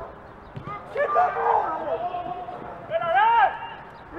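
Shouting voices out on a football pitch: one call about a second in that ends in a long held note, and a second short shout a little after three seconds.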